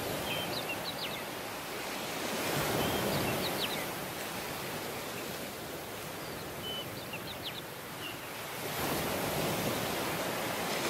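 Small sea waves breaking and washing up a sandy beach, swelling louder about three seconds in and again near the end. A few short high chirps sound over the surf.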